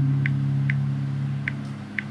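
Background church keyboard holding a low, sustained chord, with a new low note coming in just as it begins. Faint light ticks sound about every half second.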